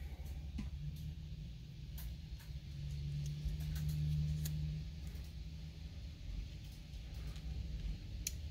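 A few faint clicks and light handling sounds of cardstock and die-cut paper pieces being moved by hand, over a low, steady hum that grows louder for about two seconds in the middle.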